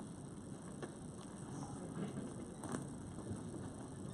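Faint room noise of people moving about in a hall, with a few light clicks and knocks, the clearest a little past halfway.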